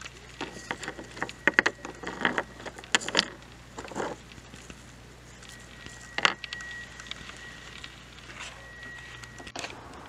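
Rock specimens clicking and knocking together as they are handled: a quick, irregular run of light clacks in the first four seconds, then a few scattered ones.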